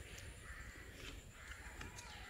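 Faint outdoor background noise with a bird calling in the distance.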